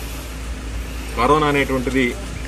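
A man speaking, his voice starting about a second in, over a steady low background hum.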